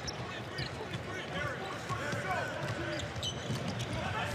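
Live college basketball game sound in an arena: a ball bouncing and short sneaker squeaks on the court over crowd voices.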